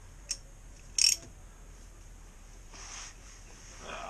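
Ratchet with a 17 mm socket working on an oil drain plug: a single sharp click, then a short, louder rasp about a second in, and a softer scrape near the end.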